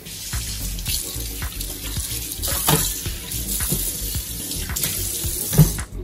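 Kitchen tap running into a stainless steel sink, a steady hiss of water, with a couple of short knocks, the loudest near the end.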